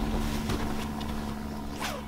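Boat motor humming steadily over wind hiss, slowly fading out, with a short falling sweep near the end.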